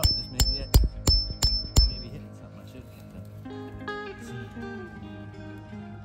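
A steel chisel being struck in quick succession, about six sharp ringing metallic blows roughly three a second in the first two seconds, as it is driven down to cut a root sucker off at the base of a tree. Acoustic guitar music continues underneath and alone afterwards.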